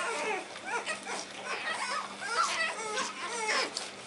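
Pug puppies whining, a run of short high-pitched whimpers that rise and fall.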